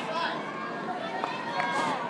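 Indistinct voices and crowd chatter from spectators in a large hall.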